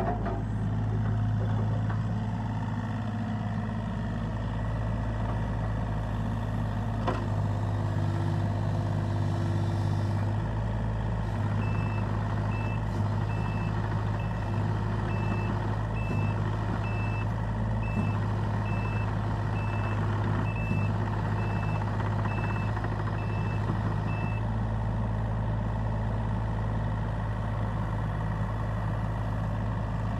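Hitachi ZX35U-2 mini excavator's diesel engine running steadily, with a brief higher hum about a third of the way in. Its travel alarm beeps just over once a second through the middle stretch, while the machine tracks.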